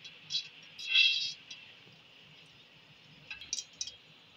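Ghee being tipped from a bowl into an aluminium cooking pot: a short hiss about a second in, then a few light metallic clinks near the end.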